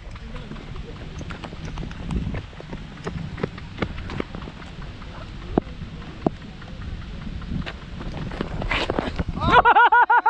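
Scattered footsteps and small knocks from the wicketkeeper moving about on a dirt pitch, over a rumble of wind on the helmet-mounted microphone. Near the end a loud shout breaks in.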